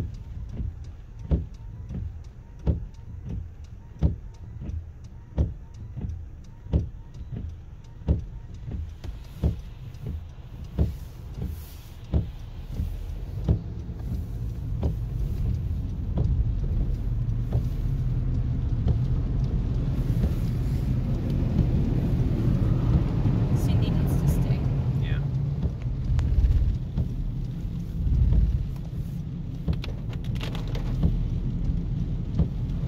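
Inside a car in heavy rain: the windshield wipers sweep with a thump about every 1.3 seconds over a low engine-and-road rumble. About halfway through the wiper strokes stop, and a steady rush of rain and wet tyres grows louder.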